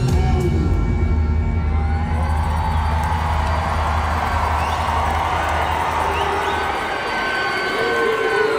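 Loud hip-hop beat with heavy bass played over an arena PA, with a large crowd cheering over it; the bass drops out about a second before the end.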